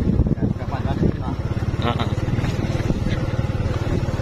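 Motorcycle engine running steadily while riding along a dirt road.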